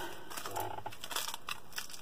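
Soft, irregular crinkling and rustling of plastic as a candy bar is pulled out of a Dollar Tree shopping bag.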